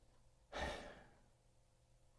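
A man's single audible breath, starting about half a second in and fading out over about half a second, with near silence around it.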